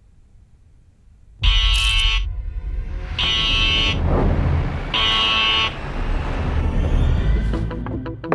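Three loud buzzing alarm blasts, each under a second and evenly spaced about 1.7 s apart, starting about a second and a half in, over a low rumbling drone: film sound design.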